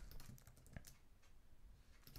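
Near silence with a few faint computer keyboard clicks.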